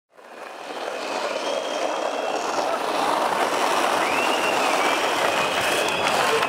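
Skateboard wheels rolling on asphalt among the hubbub of a street crowd, a steady noise that fades in quickly in the first second.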